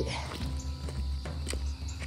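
Footsteps crunching on a loose gravel and stone trail, a few steps about half a second apart, over steady background music.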